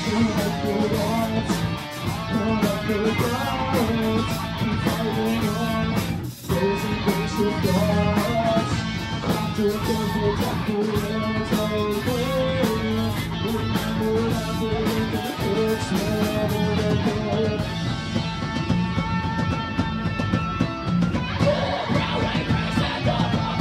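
Live rock band playing an instrumental passage on electric guitar, bass guitar and drum kit, with a brief break about six seconds in.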